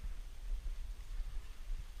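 Wind buffeting the microphone of a body-mounted camera outdoors: an uneven low rumble with no distinct events.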